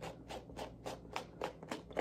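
Suede eraser block scrubbed quickly back and forth over a suede sneaker upper, about four short scrubbing strokes a second.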